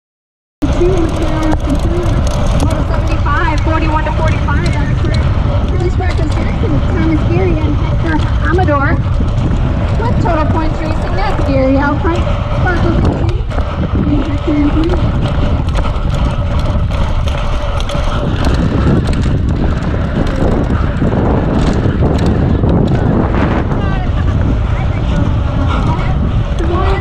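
Steady rush of wind over the microphone of a rider-mounted camera, mixed with tyre noise, as a BMX bike rolls along a dirt race track. It starts abruptly about half a second in.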